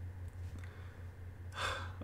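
A man's short audible breath, drawn in near the end before he speaks again, over a low steady hum.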